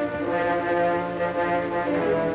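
Orchestral film score with brass holding sustained chords.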